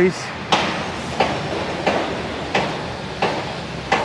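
Footsteps of a person walking at a steady pace on a paved path, heard close to the microphone as regular soft thuds, about three every two seconds.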